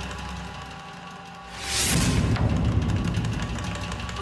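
Dramatic background score: a low sustained drone, then about one and a half seconds in a sudden whoosh and a deep boom that rumbles on, a stinger marking a cut to a flashback.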